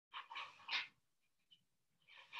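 A dog barking faintly: about three short barks in the first second.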